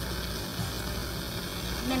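Steady hiss with a low hum beneath it; a woman's voice begins near the end.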